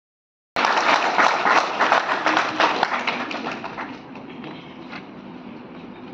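Audience clapping in a hall, cutting in suddenly about half a second in and dying away over the next three seconds.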